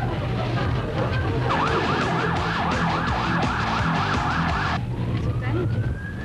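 Police car siren heard from inside a moving car. A slow wail switches to a fast yelp of about four sweeps a second for around three seconds, then goes back to a rising wail, over the car's engine hum.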